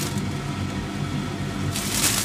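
Plastic bread bag rustling and crinkling as a slice is taken out and laid in the pan, with a louder crackle near the end, over a steady low hum.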